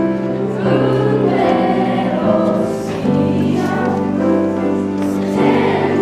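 A Lucia procession choir singing a slow Lucia song in long held notes that move to a new pitch every second or two.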